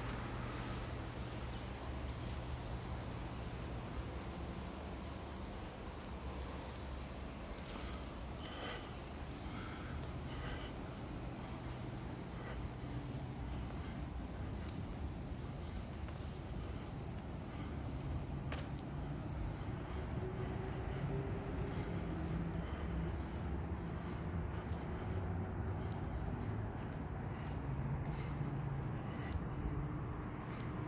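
A steady, high-pitched drone of insects calling without a break, with a low rumble underneath.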